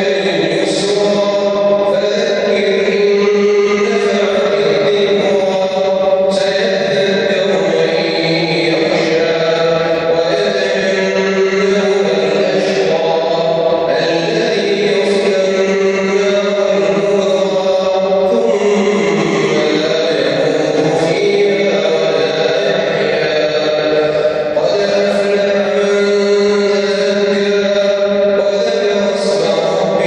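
One voice chanting a melodic Islamic recitation with long held notes, carried over a mosque's loudspeakers through a large reverberant prayer hall.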